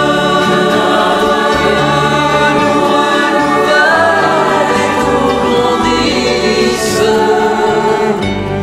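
A choir singing long, held notes of a French hymn refrain over a low accompaniment.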